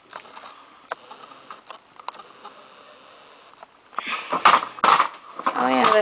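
Handling noise from a handheld camera and tripod being moved: faint clicks at first, then louder knocking and rustling from about four seconds in. Near the end comes a boy's hesitant 'uh'.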